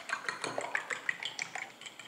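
A metal spoon beating eggs in a ceramic bowl, clinking quickly and lightly against the bowl's sides, several clinks a second.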